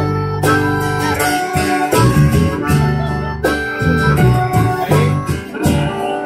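Live band playing an instrumental break: strummed acoustic guitar with cajon beats and low guitar notes, under a harmonica playing long held notes.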